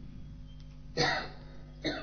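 A man clearing his throat close to the microphone: a short rasp about a second in and a shorter one just before the end, over a faint steady hum.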